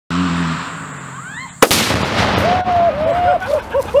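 A single sharp, very loud blast of about two pounds of Tannerite detonating inside a PC case, about a second and a half in, followed by a rumbling tail. A man starts laughing about a second later.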